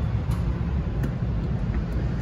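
Steady low rumble of background noise, with a few faint clicks.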